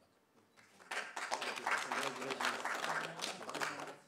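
Applause from a small audience, starting about a second in and dying away near the end, with voices mixed in.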